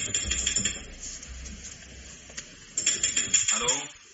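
Clicking and rattling of an old telephone as a call is placed, in two bursts: one at the start and a denser one about three seconds in.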